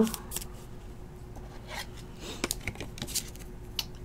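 Light scattered clicks and rustling of trading cards and a clear rigid plastic toploader being handled.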